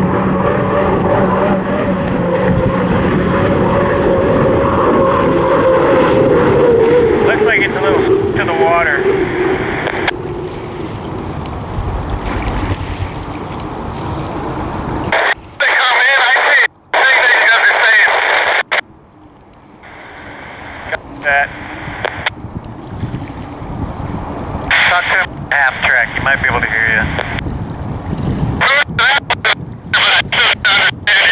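Unlimited hydroplane's turbine engine running at speed, its whine falling slowly in pitch over the first ten seconds as the boat passes. From about halfway through, thin, narrow-band voices like radio chatter come and go over the engine.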